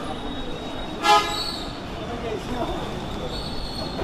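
A single short horn toot about a second in, over background street noise and faint voices.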